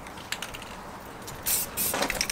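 Aerosol spray paint can hissing in two short bursts near the end, with a few faint clicks before them.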